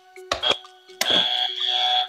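A quiz buzzer sounds about a second in: a sudden, high electronic tone held for about a second, signalling that a contestant has buzzed in to answer.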